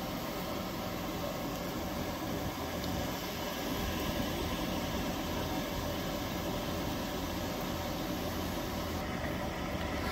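Flufftastic cotton candy machine running, its motor and spinning head giving a steady, even hum.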